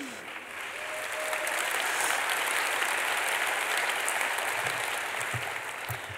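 Audience applauding, building over the first two seconds, holding, then thinning out near the end.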